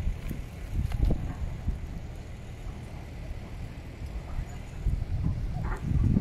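Wind buffeting the phone's microphone as a low, uneven rumble, growing stronger near the end, with faint voices.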